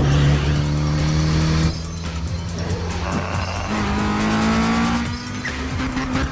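Sports car engines in a film's street race: one is held at high revs for about a second and a half, then an engine revs up with a rising pitch as it accelerates, with music underneath.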